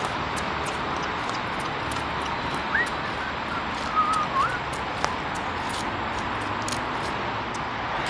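Steady outdoor city background noise with light, irregular ticks, and a few short bird chirps about three and four seconds in.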